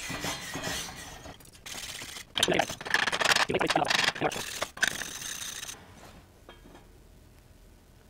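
Steel wire brush scrubbing thin E6010 slag off a fresh butt-joint weld on steel plate, in quick scratchy strokes with short gaps; the scrubbing stops about six seconds in.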